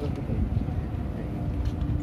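A steady machinery hum, such as a ship's engine or generator, under low rumbling wind buffeting the microphone.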